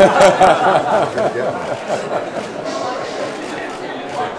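A small group laughing and chatting in a room, loudest right at the start and then dying down to murmured talk.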